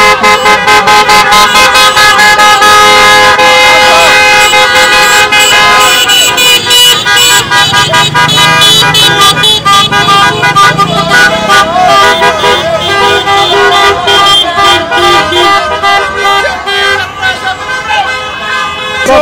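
Many car horns honking at once in overlapping steady tones of different pitches, with voices shouting over them.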